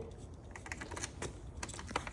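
A hex key turning a battery-mount bolt on a Sur-Ron electric dirt bike: a rapid, irregular scatter of light metal clicks and ticks, with a slightly louder click near the end.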